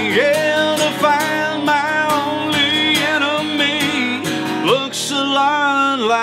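Acoustic guitar strummed in a steady rhythm under a man singing long held notes, with a slide up in pitch near the end.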